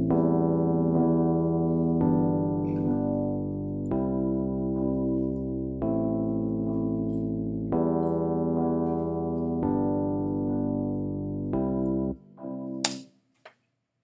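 Logic Pro X's Classic Electric Piano playing back a programmed MIDI chord loop: A minor, E minor, G major, C major, one held chord per bar with low bass notes under it. The chords change about every two seconds. Playback stops about twelve seconds in, followed by a single sharp click.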